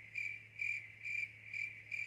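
A high-pitched chirping, pulsing about twice a second, over a low steady hum.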